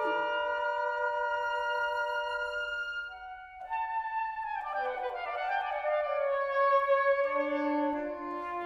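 Saxophone quartet (soprano, alto, tenor and baritone saxophones) playing contemporary chamber music. Held chords for about three seconds, a brief dip, then quicker lines that fall in pitch, and a low held note near the end.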